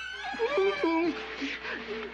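A man wailing and sobbing in anguish, his wordless cry wavering up and down in pitch and breaking into breathy sobs near the end.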